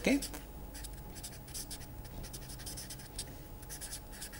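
Felt-tip marker writing on paper: a quick run of short, scratchy pen strokes.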